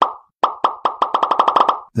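A run of about a dozen short, sharp pop sound effects, each with a brief pitched ring, coming faster and faster.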